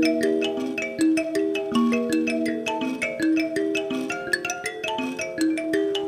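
Mbira (thumb pianos) played in an instrumental piece: a fast, continuous interlocking pattern of plucked, ringing notes, several a second.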